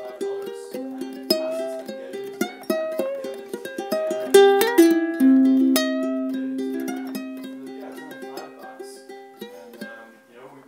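Instrumental music on a plucked string instrument: a melody of single picked notes, each ringing and fading, growing quieter toward the end.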